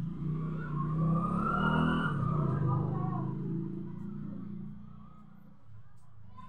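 A motor vehicle's engine running, growing louder over the first two seconds, then fading away.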